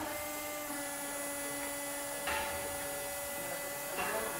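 Electric drive motor of a car rollover simulator whining steadily as it slowly turns the car onto its side, with a short clunk a little past halfway.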